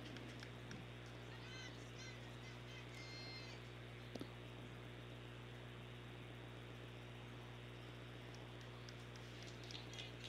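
Faint background of the broadcast feed: a steady low electrical hum under a soft hiss, with a few faint chirps a second or two in and again near the end, and one soft click about four seconds in.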